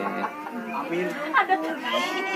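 Indistinct chatter of several people talking at once, no words standing out.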